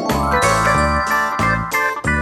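A twinkling sparkle chime sound effect that rings out at the start, over cheerful background music with a steady beat.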